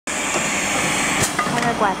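Steady whirring hum of a powered tube filling machine, with a single sharp click a little over a second in; a man starts speaking near the end.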